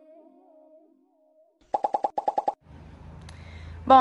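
Background music fading out, then a quick run of about ten short pitched pops in under a second, likely an editing sound effect, followed by a low steady room hum.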